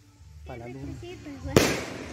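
An aerial firework bursting overhead with one sharp bang about a second and a half in.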